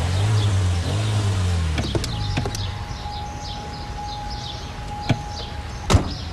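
A car engine running for about two seconds, then dying away as the sedan stops. Car doors click and slam, with the loudest slam near the end. Birds chirp throughout, and a steady high tone sounds through the middle few seconds.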